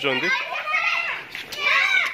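Children calling out and shrieking in high voices as they run about playing, with a louder shriek near the end.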